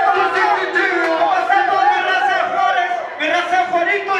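Loud men's voices shouting and chanting into microphones through a PA, with a crowd yelling along, at a live rap show.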